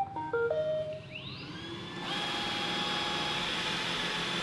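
iRobot Roomba 960 robot vacuum starting a cleaning run: a short electronic tune of stepped beeps as its Clean button is pressed, then its motors spin up with a rising whine about a second in and settle into a steady whirr.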